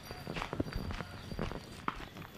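Footsteps of a person running on a dirt path, a handful of irregular footfalls.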